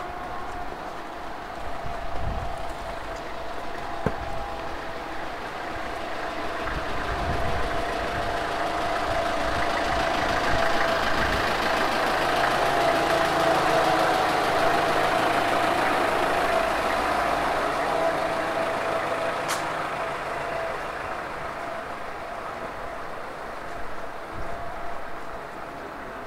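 A motor vehicle's engine running with a steady hum amid street noise. It grows louder toward the middle and then fades away. A single sharp tick comes about two-thirds of the way through.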